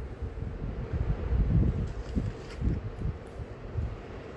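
Wind buffeting a phone's microphone, a low irregular rumble, with bumps from the phone being handled and steadied.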